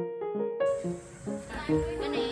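Light background music of short keyboard notes. About two-thirds of a second in, the hiss of a busy market with indistinct voices comes in underneath it.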